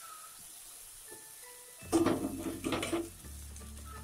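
Metal spatula stirring and scraping fish and masala around an aluminium kadai, loudest for about a second near the middle, with a faint sizzle from the oil. Soft background music with held notes runs underneath.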